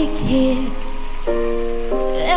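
A male singer's slow, held vocal line over sustained keyboard chords, with the chord changing partway through.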